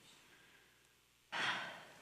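A woman's audible sigh: one breathy exhalation about a second and a half in, fading away over about half a second after a near-silent pause.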